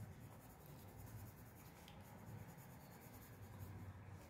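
Faint scratching of a pencil drawing on paper, over a low steady hum.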